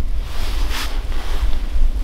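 Wind buffeting the microphone, a steady low rumble, with a brief faint rustle a little under a second in.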